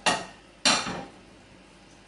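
A metal frying pan knocked twice on the gas stove's grate, about half a second apart, the second knock louder and ringing briefly.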